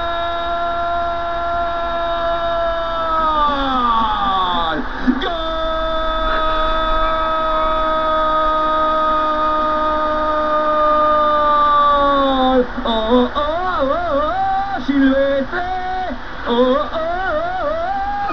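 A man's voice singing: one long held note that slides down about four seconds in, a second long note held for about seven seconds that also sinks at its end, then a run of short wavering notes.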